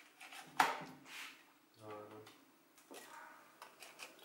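Quiet clicks and scraping of a serving utensil against an aluminium foil lasagna tray while a piece of lasagna is cut and lifted out, with one sharp click about half a second in and a few faint ones near the end. A short murmured voice sound around the middle.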